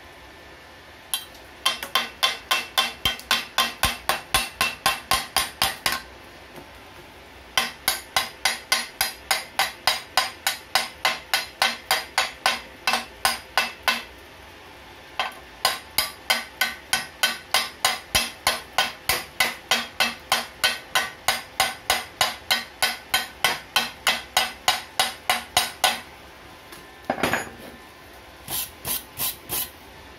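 A hammer striking steel at about four blows a second, in three long runs with short pauses, chipping slag off a freshly welded seam on a steel square tube. A few irregular knocks follow near the end.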